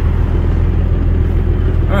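A car engine idling, heard from inside the cabin as a steady low rumble.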